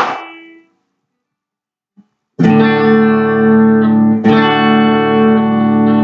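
Guitar chords: one chord is struck right at the start and cut off within a second. After a short silence and a small click, strummed chords ring out from about two and a half seconds in and are struck again about four seconds in, as the instrumental intro of the song.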